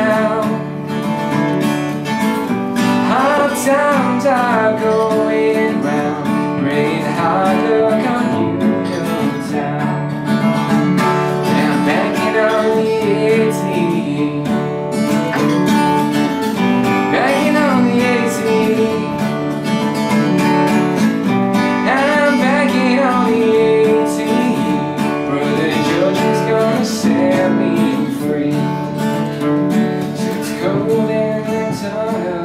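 Acoustic guitar strummed and picked steadily in a country-style song, with a man's voice singing at intervals.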